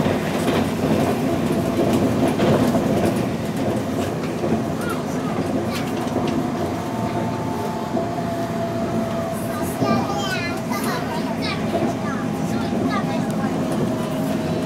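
Sound inside the carriage of a Puyuma TEMU2000 tilting electric multiple unit running at speed: a steady rumble of wheels on rail with some clickety-clack and a faint steady whine.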